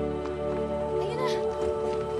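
Background music of steady held tones. About a second in comes a short call whose pitch rises and falls.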